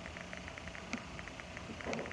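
Low steady hiss of room tone, with a few faint scattered clicks.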